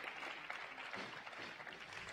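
Audience applauding in an arena, many hands clapping together, easing off slightly toward the end.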